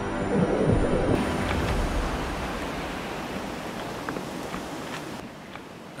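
Water noise from a swimmer moving through shallow water: a steady rushing hiss that slowly fades, with a few faint ticks.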